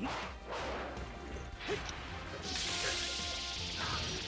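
Action-movie fight sound effects: a few sharp swishing strikes and impacts, then a longer rushing hiss from about two and a half seconds in.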